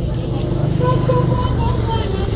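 A walking group of pilgrims singing, with held sung notes, over a steady low rumble of road traffic.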